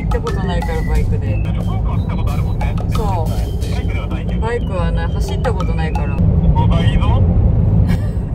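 Voices with music over a steady low rumble.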